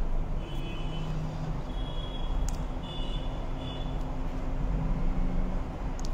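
Steady low background rumble with a faint steady hum, like traffic or room noise. Four faint short high tones come in the first four seconds, and there is a sharp click about two and a half seconds in.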